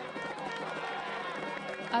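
Large crowd of protesters chanting in unison: many voices at once at a steady level.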